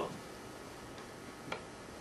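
Quiet pause in a small room: faint room hiss with two soft clicks, one about a second in and a slightly sharper one half a second later.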